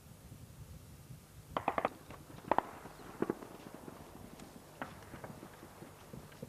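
A series of sharp cracks or knocks: a quick run of four about one and a half seconds in, then single stronger ones about a second apart, fading to lighter clicks, over a low rumble of background noise.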